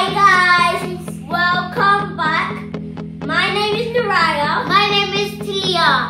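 A children's song: a child's voice singing over instrumental backing with a steady low bass.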